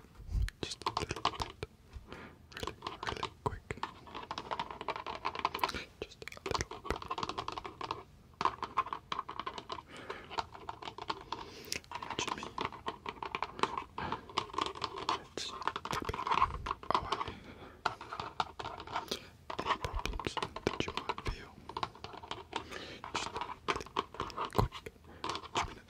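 Speed tapping with the fingertips close to the microphone: a fast, dense patter of taps that stops briefly several times.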